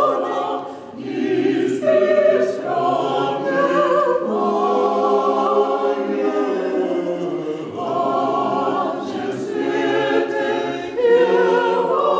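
Russian Orthodox church choir singing a Christmas hymn unaccompanied, several voices in harmony, with a short break between phrases about a second in.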